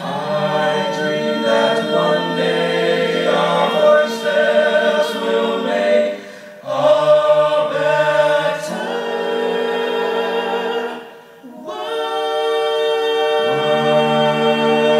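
Five-voice a cappella group singing held chords through microphones, without audible words, breaking off briefly twice, with a few sharp percussive clicks mixed in.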